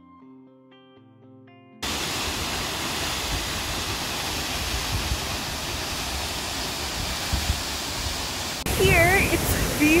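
Soft guitar music that cuts off abruptly about two seconds in, giving way to the loud, steady rush of a tall waterfall falling close by. A woman's voice starts near the end.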